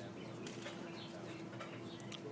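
Small birds chirping, many short high calls in quick succession, over a steady low hum.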